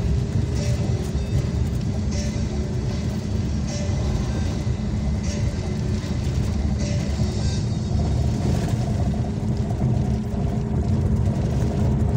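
Steady low rumble of a road vehicle in motion, with music playing faintly over it.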